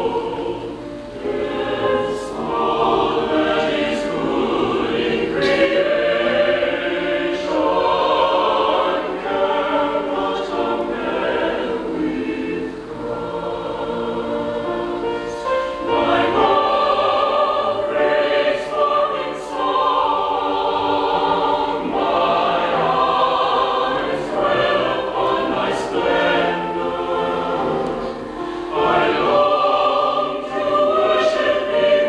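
Mixed chamber choir singing sustained chords in several parts, in phrases a few seconds long with brief crisp consonants between them.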